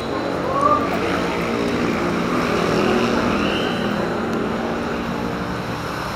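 An engine running steadily close by, a low, even hum with street noise around it.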